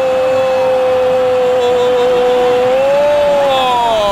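A Spanish football commentator's long drawn-out shout of "¡Gol!", held on one loud note, lifting slightly about three seconds in and sliding down as it ends.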